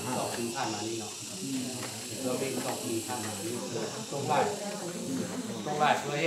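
A man speaking, over a steady high hiss.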